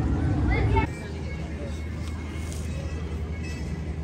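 The end of a woman's speech over a low rumble cuts off abruptly under a second in. It gives way to a steady, quieter outdoor theme-park background: a low hum with faint distant voices.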